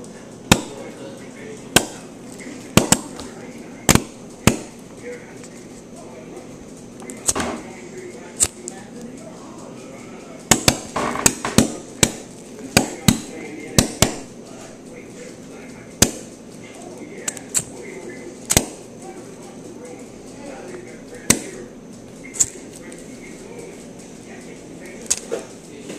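Paper roll caps for a toy cap gun going off in a lighter's flame, popping one at a time in sharp, uneven cracks, with a quick run of pops about halfway through.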